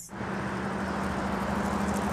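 Road traffic on a wide multi-lane street: cars and pickup trucks passing, making a steady rush of tyre and engine noise with a low hum under it.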